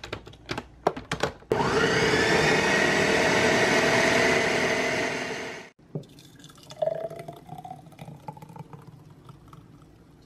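A few clicks and knocks, then a countertop blender runs steadily for about four seconds, blending strawberries, peanut butter and milk into a smoothie, and stops abruptly. Afterwards the thick smoothie is poured from the blender jar into a glass with faint pouring sounds.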